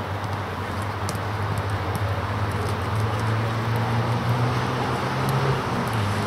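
Steady outdoor background noise with a continuous low hum, and faint short ticks scattered through it.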